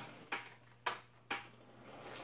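Three sharp clicks about half a second apart, from a fan's switch or buttons being pressed to turn it on.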